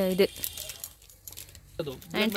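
Light, irregular crinkling and rustling of plastic jewellery packets being handled, with a woman's brief speech at the start and again near the end.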